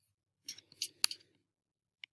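A few short, quiet clicks and scrapes from a computer mouse on a desk, the sharpest click about a second in.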